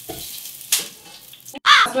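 Breaded pork cutlets sizzling steadily as they fry in hot fat in a frying pan, with a brief sharp crackle a little under a second in.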